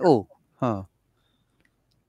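Speech only: the end of a spoken phrase and a short 'huh', then a pause of near silence.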